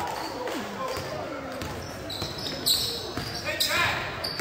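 Live basketball game in a gym: a basketball bouncing on the hardwood floor, with the echoing murmur of spectators' voices and a few high sneaker squeaks late on.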